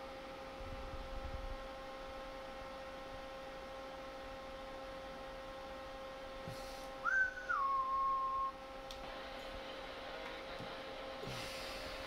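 Steady electronic whine made of several constant tones from running bench test equipment. About seven seconds in, a single whistled note starts higher, drops in pitch and holds for about a second.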